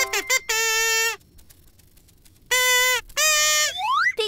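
A toy horn blown in three loud held blasts, each about half a second long, with a pause after the first, ending in a quick rising glide. A few quick musical notes come just before the first blast.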